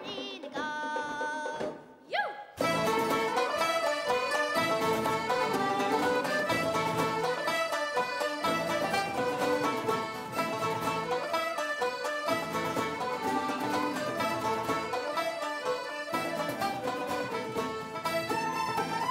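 Irish traditional ensemble playing an instrumental break with fiddles, flutes and guitars together. A quieter phrase of held notes gives way about two and a half seconds in to the full group coming in at once.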